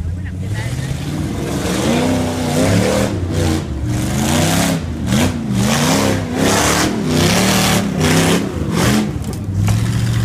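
A tube-frame off-road buggy's engine revving up and down over and over as it climbs a steep dirt hill, the throttle surging about once a second. Near the end it drops to a steady idle.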